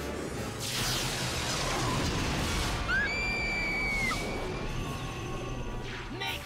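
Cartoon action sound effects over background music: a crashing whoosh in the first second or so, then a high electronic zap tone from about halfway in that rises, holds for about a second and drops away.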